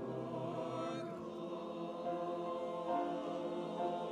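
Church choir singing in parts, with long held notes; the lowest notes fall away about a second in.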